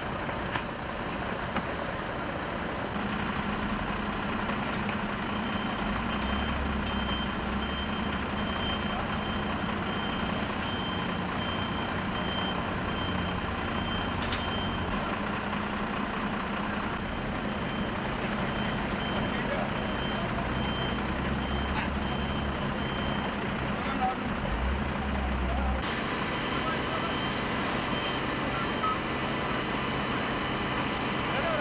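Fire engine's diesel engine running steadily, with a repeating high-pitched beep through much of it that stops for a while and returns near the end.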